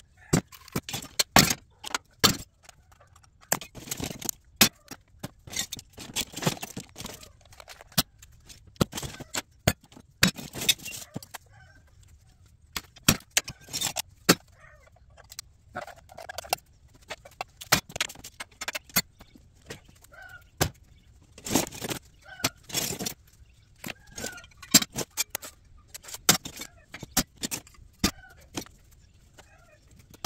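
Irregular clinks, clicks and clatters of small metal scrap parts and wire being handled, cut and tossed into plastic tubs, with short quiet gaps between.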